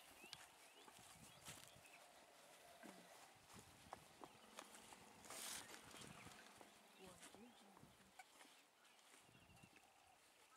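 Near silence: faint outdoor background with distant, indistinct voices and a few small clicks and rustles.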